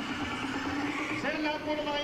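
Background jazz-blues music with held, sustained notes; a new phrase enters about a second in.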